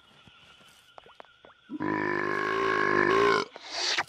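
A cartoon spiketail dinosaur's voice gives one long, steady, low contented grunt lasting about a second and a half, starting about two seconds in, then a short breathy sound near the end.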